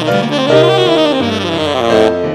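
Tenor saxophone playing a jazz blues line of quick notes that bend and slide, with grand piano accompaniment underneath.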